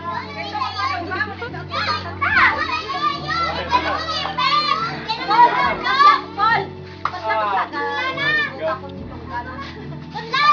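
A group of children shouting and calling out excitedly at play, many high voices overlapping, with music playing in the background.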